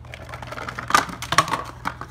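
Paper-board poker-chip box insert and chips being handled: a run of light scrapes and clicks, the sharpest about a second in and again shortly after.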